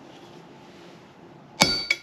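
A hammer strikes a steel chisel held on a cast bronze tablet lying on an anvil, cutting a cuneiform mark. There are two blows about a third of a second apart near the end, each with a bright metallic ring.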